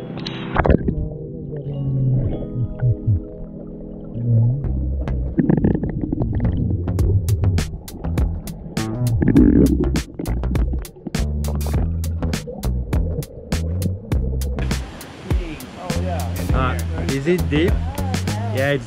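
Muffled underwater sound from an action camera held beneath the surface of a pool, with a quick run of clicks in the middle, then open-air sound returning as the camera surfaces near the end. Background music plays throughout.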